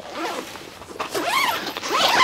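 Zipper on the fabric wall of a car awning room being pulled open in a series of short strokes, growing louder from about a second in.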